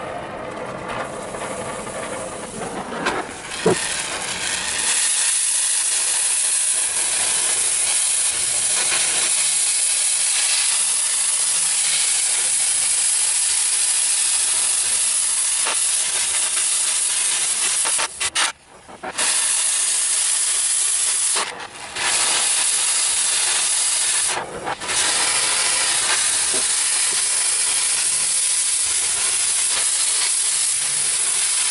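Oxy-fuel cutting torch hissing steadily as it cuts through sheet metal. The hiss builds over the first few seconds, then breaks off briefly three times about two-thirds of the way through.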